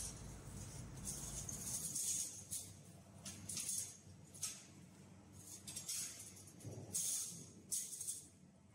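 Thin titanium strips clinking and rattling against one another and the metal jig as they are handled and set in place by hand: short, scattered bursts of light metallic jingling.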